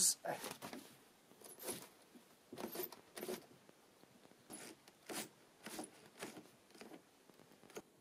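A run of short scrapes and clicks, about a dozen spread unevenly over several seconds: narrowboat side windows and their latches being pushed shut and fastened.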